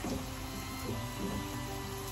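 Dough frying in hot oil in a skillet, a steady sizzle, under background music.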